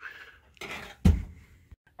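A short scrape, then the oven door shutting with one solid thump about a second in.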